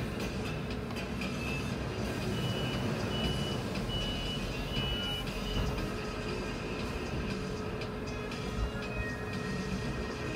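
City bus engine running while the bus stands, starting to pull away near the end. Four short, evenly spaced high beeps sound about two to five seconds in.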